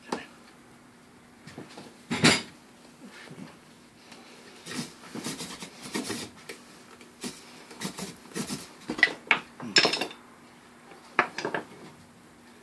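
Irregular wooden knocking and clattering from a mouth toggle drill: a loud knock about two seconds in, then a busy run of rattles and knocks as the spindle is spun in its hearth board by pulling the toggle cord back and forth.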